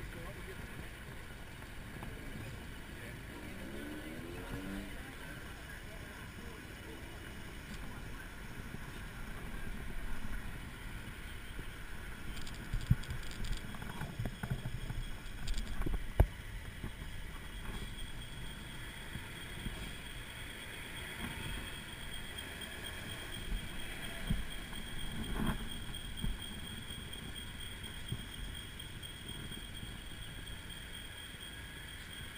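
City street traffic with pedestrians' voices in the background, heard from a bicycle-mounted camera. A run of sharp knocks and rattles comes around the middle, and a faint steady high whine runs through the second half.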